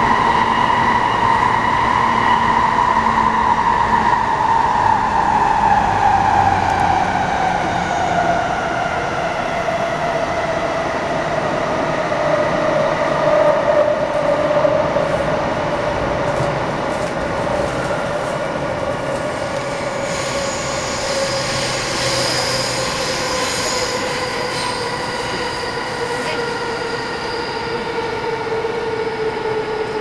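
Traction motors of an E233-7000 series electric train's motor car whining, heard inside the passenger cabin over the rumble of wheels on rail. The whine glides slowly and steadily downward in pitch as the train slows for its station stop. A higher hiss of brakes or wheels comes in about two-thirds of the way through.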